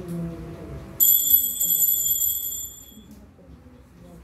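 A high, bell-like ringing chime of several steady tones, starting sharply about a second in, lasting about two seconds and cutting off abruptly.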